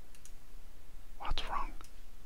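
A man's voice muttering briefly under his breath about a second in, with a faint click just before.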